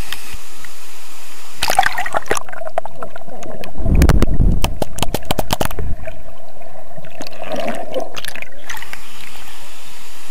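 Waterfall water pouring and splashing onto a waterproof camera's housing, with a steady rush and many sharp spattering knocks. About four seconds in, a deep, muffled surge comes as the camera goes under the water.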